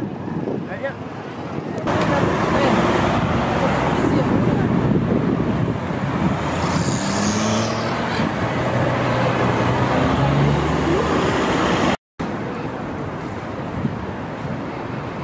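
Busy city road traffic: cars and a bus running through an intersection, a dense steady wash of engines and tyres that grows louder about two seconds in, with engine hum swelling in the middle. Near the end it cuts off abruptly and gives way to quieter street noise.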